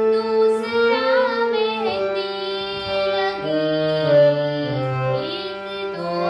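A girl singing a devotional song (bhajan) to her own harmonium accompaniment. The harmonium's reed notes are held steady beneath her wavering vocal melody.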